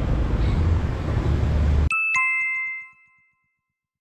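Street traffic noise, a steady low rumble, cuts off abruptly about two seconds in and gives way to a two-note descending chime, ding-dong, that rings out for about a second before silence. The chime is an edited-in transition sound effect.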